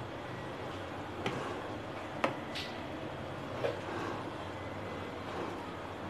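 Low, steady background room noise with three faint, short clicks spread through it.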